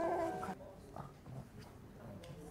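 A baby's short babbling cry from the show's soundtrack over a held music note, both cutting off about half a second in; then faint room tone.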